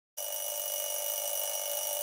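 An electronic wake-up alarm sounding as one steady, unbroken buzz.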